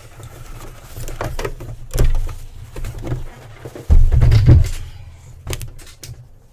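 Domestic sewing machine stitching around a pinned fabric circle, running in short bursts over a low steady rumble, with a few knocks as the work is handled.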